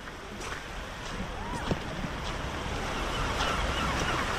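Seaside ambience of waves washing on the shore with wind, growing steadily louder.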